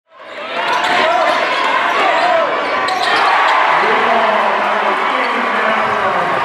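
Basketball game sound in a gymnasium: a crowd's steady din of voices, with a few ball bounces on the court. The sound fades in over the first half second.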